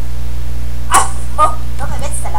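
A chihuahua held up close to the microphone makes a few short, sharp sounds. The first and loudest comes about a second in, and shorter ones follow about every half second.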